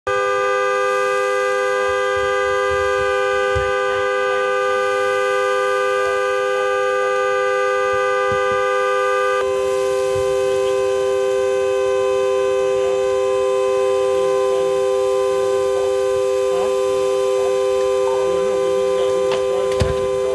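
A car horn sounding continuously: a steady two-note chord that changes slightly in pitch about halfway through. A sharp pop comes near the end.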